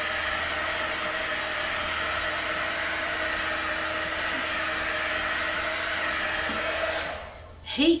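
Handheld heat gun (a heat wand) running steadily with a fan whir and a light whine as it is passed over wet acrylic pour paint to pop air bubbles. It winds down and stops about seven seconds in.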